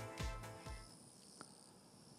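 Broadcast music fading out in the first second, leaving faint, steady high-pitched insect chirring from the course ambience.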